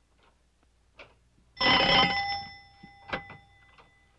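A doorbell rings once, a metallic bell tone that starts sharply about a second and a half in and fades over about a second. A sharp click and a few light knocks follow.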